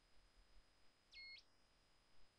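Near silence with a faint steady high whine, and one brief faint beep just past a second in.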